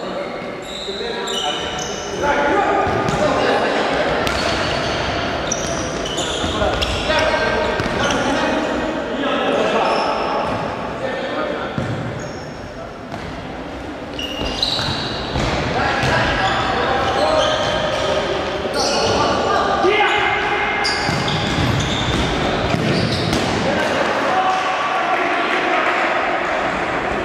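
Futsal match play in an echoing sports hall: the ball is kicked and bounces on the wooden floor again and again, with players shouting.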